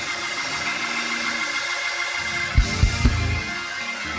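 Music with sustained held chords, broken by three heavy low bass hits in quick succession a little past halfway.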